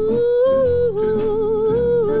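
Opening bars of a 1949 R&B vocal group recording played from an original 45 rpm record: a sustained wordless melody line steps up and back down over a slow, steady beat.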